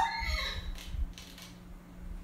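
A woman's vocal imitation of a horse whinnying, its falling, wavering end fading out in the first half second. After that only a low steady hum and a faint click or two.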